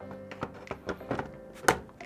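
Faint background music with a few light clicks and knocks of the monitor's plastic-and-metal stand being pushed into its mount on the back of the panel, the sharpest knock near the end. The stand's movable mounting piece is stiff and does not drop down to lock.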